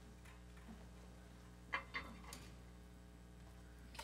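Two sharp knocks about two seconds in and a few fainter ticks and clicks, from musicians handling gear as they take their places on stage, over a steady low electrical hum from the sound system.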